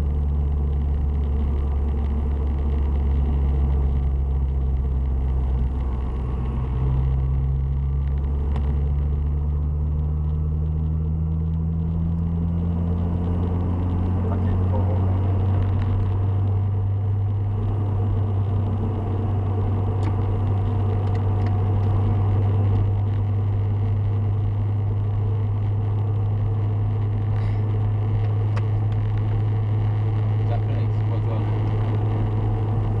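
Honda Civic Type R EP3's K20A 2.0-litre four-cylinder engine heard from inside the cabin under steady cruising, with tyre and road noise; its pitch rises slowly over the first fifteen seconds or so, then holds steady.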